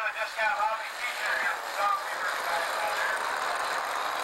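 Radio-controlled model airplane's engines running steadily as the model touches down and rolls along the runway, with a man talking over it in the first couple of seconds.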